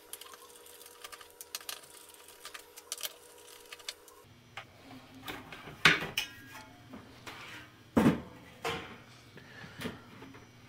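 Hands handling the metal bottom cover of a Sony CD changer: small clicks and scrapes, then the cover lifted off the chassis with two loud metallic clanks, about six and eight seconds in.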